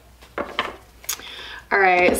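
Tarot cards being handled and laid down on a cloth-covered table: a few sharp snaps and taps of card stock. Near the end a woman's voice begins with a held, steady tone.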